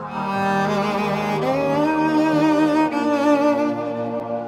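Bowed string music: a slow melody of long notes with vibrato over a low sustained drone, sliding up into a held note about a second and a half in.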